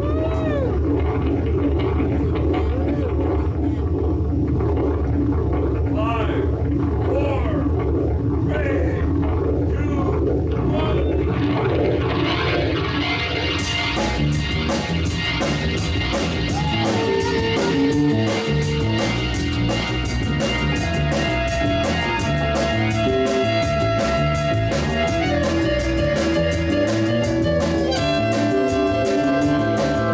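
An electronic rocket blast-off effect: a steady low rumble with warbling, swooping tones over it. About fourteen seconds in, a live band comes in: drum kit with busy cymbals, guitar, upright bass, keyboard and a reed horn playing the song's opening.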